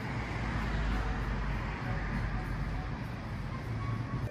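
Steady city traffic noise, a low, even rumble of road vehicles.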